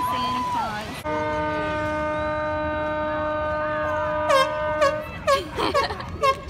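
A boat's horn sounds one long, steady blast of about four seconds, starting after a brief earlier tone and stopping abruptly. Near the end it gives way to a run of short, clipped notes about twice a second.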